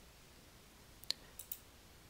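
Faint computer mouse button clicks: one click about a second in, then a quick pair just under half a second later.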